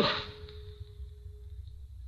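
A pause in an old radio broadcast recording: faint steady low rumble and background noise with a faint held tone, just after the last word of a man's voice fades out at the start.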